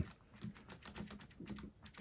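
Novelkeys Cream linear switches in an upside-down mechanical keyboard clicking faintly as the board is pressed down repeatedly by hand, a quick, uneven run of soft clicks: the switches are being broken in.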